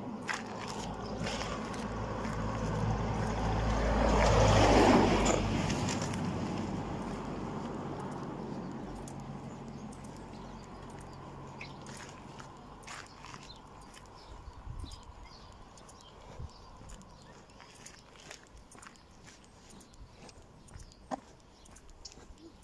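A small pickup truck drives past at close range, its engine and tyres on the road growing louder to a peak about four to five seconds in. The sound then fades slowly as it moves away.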